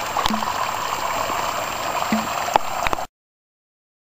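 A steady rushing noise with a few light clicks, which stops dead about three seconds in.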